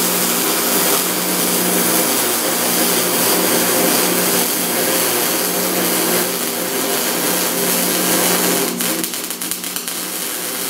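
Plasma cutter running steadily as it cuts through the car's sheet-steel roof, a loud continuous hiss with a steady electrical hum under it, faltering near the end.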